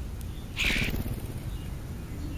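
A crow gives a single harsh caw about half a second in, over a low steady rumble of wind on the microphone.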